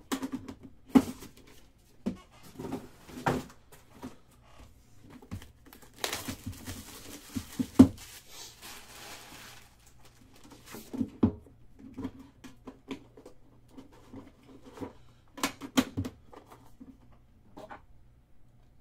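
Cardboard trading-card boxes being handled on a table: a run of knocks and taps as a box is closed, set down and the next one picked up. From about six seconds in there are some three seconds of rustling, with the sharpest knock near the end of it.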